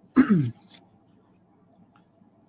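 A man clearing his throat once, a short sound falling in pitch.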